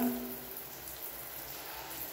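Hand-pump pressure sprayer releasing a continuous fine jet of liquid onto floor tiles: a steady, faint hiss.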